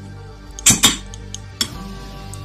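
Sharp metallic clinks of an aluminium cylinder head being set down over the studs onto the cylinder of a Phantom 85 two-stroke bicycle engine: two close together about two-thirds of a second in, then two lighter ones.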